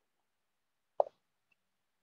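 A single short, soft pop about a second in, with a quick smaller echo right after it; otherwise near silence.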